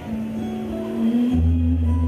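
Acoustic guitar played live through a stage PA, with one note held under shorter notes above it. A deep bass note comes in about a second and a half in.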